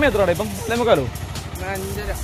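A man's voice speaking in short phrases, over a low, steady rumble.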